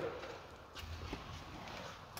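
Faint rustling and a couple of light knocks as someone climbs into a car's driver seat.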